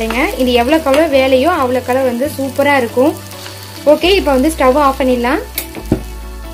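A spatula stirring thick onion-tomato masala in a nonstick pan, squeaking against the pan surface with each back-and-forth stroke. The strokes pause about three seconds in, resume a second later, and end with a short click.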